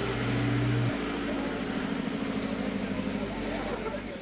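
Small box truck's engine running as it drives past and away up a dirt driveway, its sound slowly fading; a deep steady hum drops out about a second in.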